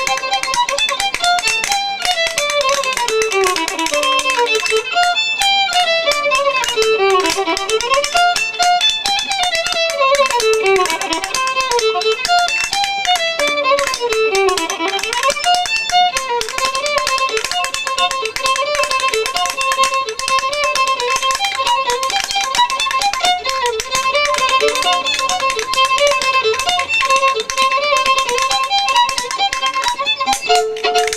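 Fiddle playing a fast reel, its melody running up and down in quick notes, with wooden French Canadian spoons clacking a steady rhythm underneath.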